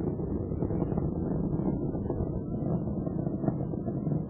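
Steady low rumbling roar of Space Shuttle Atlantis's rocket engines and solid rocket boosters during ascent.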